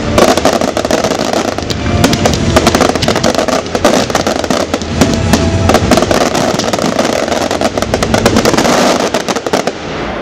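A dense barrage of fireworks going off, with rapid bursts and crackling over music playing along with the show. The bursts stop shortly before the end.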